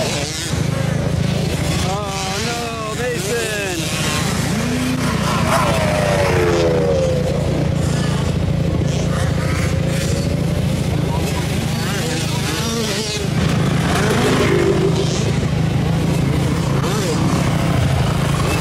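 Small two-stroke motocross bike engines running and revving on the track, their pitch rising and falling as the bikes accelerate and back off, over a steady low drone.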